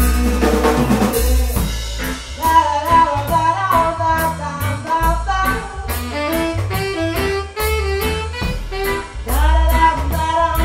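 Blues band playing an instrumental break: a saxophone carries the melody over a steady drum beat and bass line.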